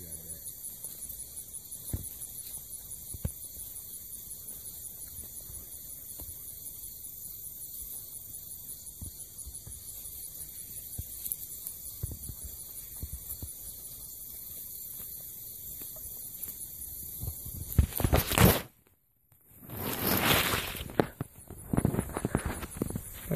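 Faint rustling and crackling of grass and dry leaves as two nine-banded armadillos root about with their snouts, over a steady hiss. Near the end there is loud rubbing and knocking from the phone being handled, with a brief cut-out.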